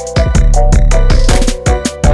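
Background music with a steady beat and deep bass, played loud.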